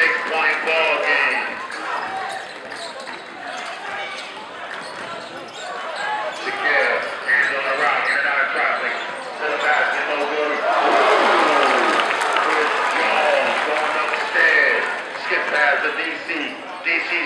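Basketball dribbled on a hardwood gym floor during live play, a run of short bounces, over the voices of a crowd in the stands.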